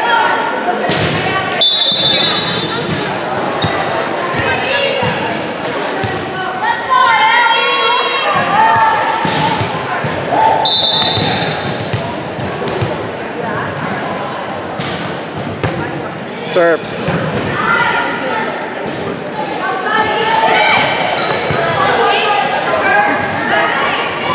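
Volleyball gym ambience: many voices of players and spectators chattering and calling out, a volleyball bouncing and being struck on a hardwood floor, and two short, steady, high referee's whistle blasts, about two seconds in and about eleven seconds in. The whistles mark the end of a point and the signal to serve.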